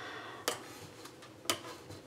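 Two sharp clicks about a second apart, with quiet room tone between, as squares of cracker dough are handled with fingers and a knife and laid on a parchment-lined baking sheet.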